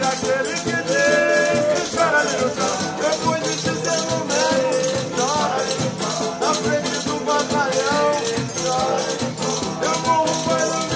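Ciranda music played live: acoustic guitars strumming and a hand-beaten frame drum, with men singing the melody.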